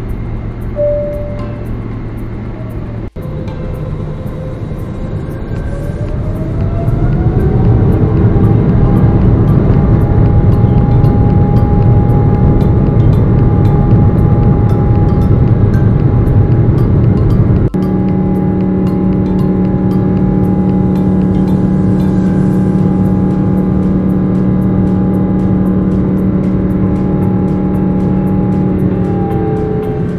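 Boeing 777 jet engines spooling up for takeoff: a whine rises about five seconds in and the engine noise grows loud and stays steady. Music with a steady beat plays over it.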